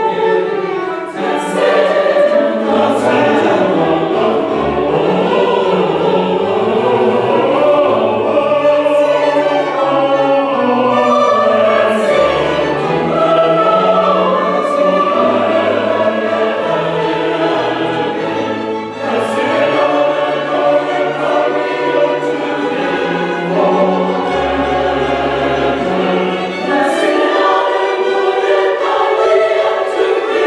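Mixed church choir singing a sustained choral anthem, accompanied by strings, with a bowed double bass moving step by step in the bass.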